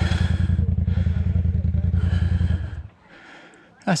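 Polaris RZR Turbo side-by-side's engine idling with a steady low pulsing, then stopping abruptly a little under three seconds in.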